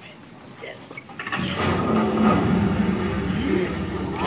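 A film soundtrack playing through a cinema's speakers: about a second in, a low mechanical rumble and hiss swell up as a hidden vault in the scene opens.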